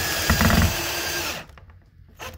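Ryobi cordless drill running steadily as it drives a mounting screw of a range receptacle into a plastic electrical box, with a brief rattle about half a second in, then stopping about a second and a half in.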